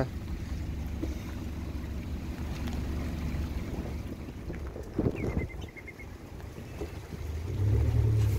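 Mercury 115 outboard engine idling with a steady low rumble, running smoothly without vibration on its new propeller, with wind on the microphone. A few knocks come about five seconds in, and a louder low hum builds near the end.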